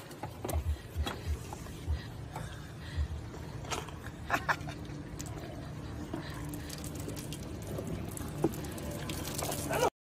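Elephant chewing food, with irregular soft crunches and low thumps. The sound cuts off suddenly near the end.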